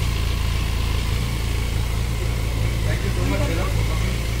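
Benelli 502 TRK's parallel-twin engine idling steadily, a low even rumble.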